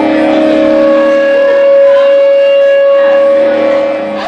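Live rock band's electric guitars and bass holding one long, steady chord that rings on unchanged.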